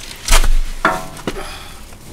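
A heavy thump, then a sharp, briefly ringing clink about a second in and a lighter click: knocks from handling tools or the camera under the car.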